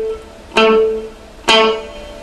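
Clean electric guitar playing short, staccato notes on the D string at the seventh fret (A), two picked notes about a second apart. Each note is cut short by releasing the fretting finger's pressure right after the pluck.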